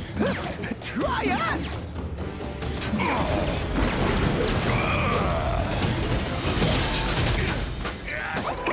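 Cartoon robot-fight sound effects: mechanical whirring and clanking with crashes over dramatic background music, busiest and densest from about three seconds in.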